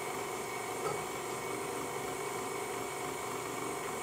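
Electric stand mixer motor running steadily on its lowest 'stir' speed while its beater turns in a steel bowl of butter frosting.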